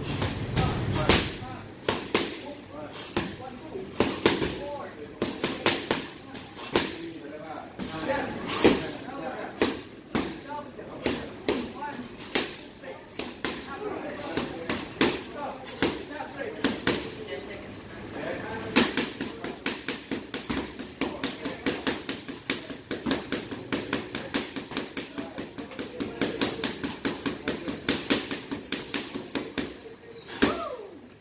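Boxing gloves striking hand-held pads in a gym: sharp slapping smacks in bursts of combinations, turning into a fast, even run of strikes, about three or four a second, through the second half. Voices are heard in the background.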